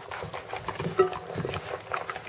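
Rhodesian Ridgeback puppies eating minced beef: a busy run of short, irregular smacking and clicking noises, with one sharp click about a second in.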